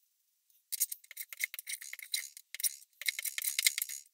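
A metal hand plane on a shooting board shaving the end grain of a small cherry block: two passes with a crisp shearing sound, each about a second and a half long.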